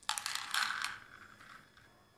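A handful of small white pearl beads dropped into a bowl, clattering in a quick run of clicks that dies away within about a second and a half.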